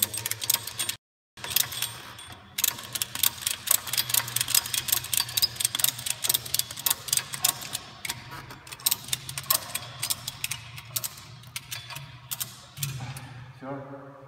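Ratchet strap tensioner on a volleyball net cable being cranked by hand: a long run of rapid ratchet clicks as the net is drawn tight, stopping shortly before the end.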